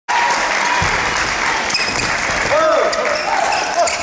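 Badminton play in a large hall: a racket strike on the shuttlecock about a second in, then several short, sliding shoe squeaks on the court floor, over a steady din of voices from the surrounding courts.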